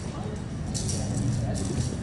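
A shaking, rattle-like noise in several short hissy bursts, starting about three quarters of a second in, over indistinct voices and the low hum of a large indoor hall.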